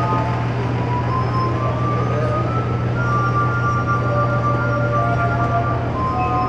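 Glass harp: wet fingertips rubbing the rims of water-tuned wine glasses, drawing slow, sustained ringing notes, often two at once. A steady low hum runs underneath.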